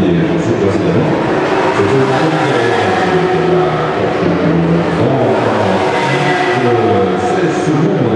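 A Porsche Carrera Cup race car's engine as the car drives through a corner on the circuit, with a voice heard over it.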